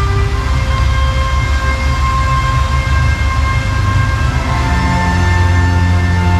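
Music with long held chords over a heavy, steady bass; the chord changes shortly after the start and again about four and a half seconds in.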